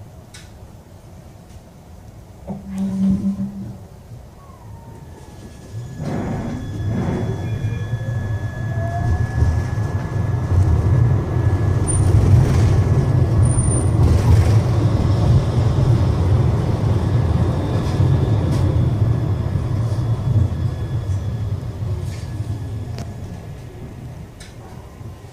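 Siemens Avenio low-floor tram heard from inside the passenger car: a short low beep about three seconds in, then the tram pulls away, its electric traction drive whining up in pitch over a growing rumble of wheels on rail. It runs at speed, then slows near the end as the whine glides back down and the rumble fades.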